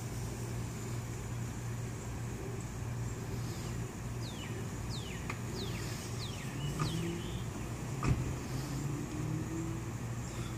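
Outdoor ambience: a steady low hum with a bird calling a quick run of about six descending whistled notes mid-way. Over the last few seconds a faint motor tone climbs in pitch, like a vehicle pulling away.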